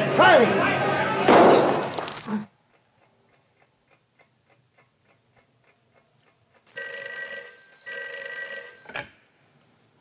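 A scuffle with men's shouts and grunts, cut off after about two seconds. Then a clock ticks quickly in a quiet room, and about seven seconds in an old desk telephone's bell rings twice, each ring about a second long.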